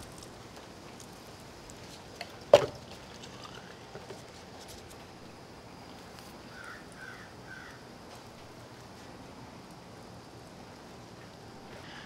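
Quiet steady background hiss, with one sharp knock about two and a half seconds in and a smaller tap just before it. A few faint high chirps come a little past halfway.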